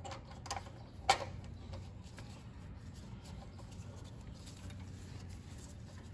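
Small parts being handled and fitted on a Honda GX200 carburetor: a few faint clicks with one sharper click about a second in, over a low steady background hum.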